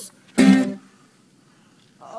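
A single strummed chord on a string instrument, played in a pause between sung lines; it sounds about half a second in and stops quickly.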